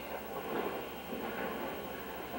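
A man taking a drink of Scotch from a paper cup. There are only faint, indistinct sounds over quiet room noise.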